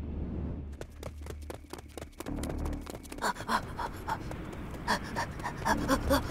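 A cartoon character panting hard in short, quick breaths while running, getting louder about halfway through, over a low, steady music drone.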